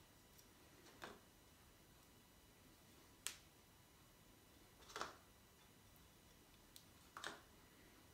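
Near-silent room with four light, sharp clicks about two seconds apart: small taps from brushing glue into a wooden dovetail joint, with the glue brush and the workpiece knocking lightly against the glue pot and each other.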